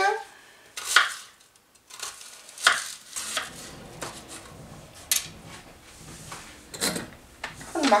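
Kitchen knife cutting an onion on a plastic cutting board: several sharp knocks of the blade on the board, irregularly spaced a second or two apart.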